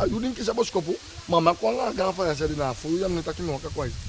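Speech only: a man talking in conversation, with a steady low rumble underneath.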